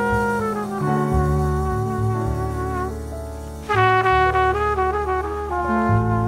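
Live jazz quartet with the trumpet leading over double bass and piano. A long held trumpet note fades away, then about two-thirds of the way through the trumpet comes back in louder with a quicker phrase.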